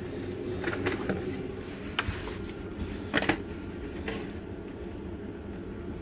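Handling noises from taking a model train locomotive in its plastic tray out of a cardboard box: a few light knocks and rustles, the loudest a little past three seconds in, over a steady low hum.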